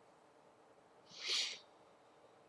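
A single short, soft breath from the man at the microphone, about a second in.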